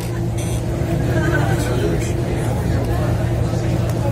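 Indistinct voices of a small crowd murmuring over a steady low hum.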